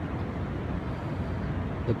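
Steady background hum of city traffic heard from a high rooftop, an even noise with no distinct events.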